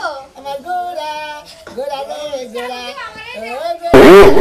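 People talking in a rather high-pitched voice, with a sudden, much louder wavering sound cutting in right at the end.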